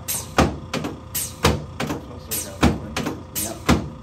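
A series of sharp clacks from a chiropractic table, roughly one every half second to a second, as the chiropractor presses down on the patient's upper chest.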